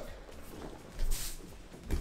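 A wooden practice sword (bokken) swishing through the air in a short burst about a second in, followed by a soft thump near the end as a bare foot steps onto the mat.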